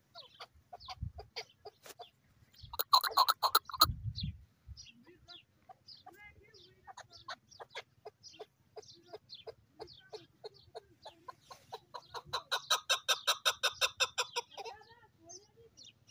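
Chukar partridge calling: a string of short clucking 'chuk' notes, rising to two loud, rapid runs, one about three seconds in and a longer one around twelve to fourteen seconds.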